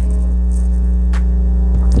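Steady low drone of a bus engine heard from inside the moving bus, with one brief click a little over a second in.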